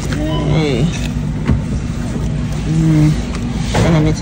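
Supermarket background: a voice that is not the narrator's, heard in the first second, over a steady low hum, with a short held tone near the end.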